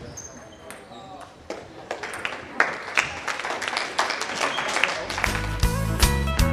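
Sharp clicks of a table tennis ball struck by bats and bouncing on the table during a rally, with voices in a large hall. About five seconds in, music with a steady beat starts.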